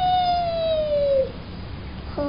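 A toddler's voice holding one long, high wordless note that slides slowly down and stops after about a second and a quarter.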